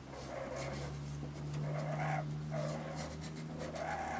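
Raccoons in a shed attic making a breathy sound in repeated bursts of about half a second, over a steady low hum.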